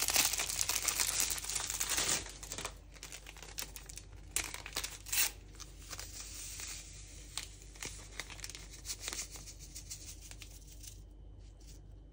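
Paper sachets of vanilla sugar crinkling and being torn open, loudest in the first two seconds, then scattered soft crackles as the sachets are handled and emptied.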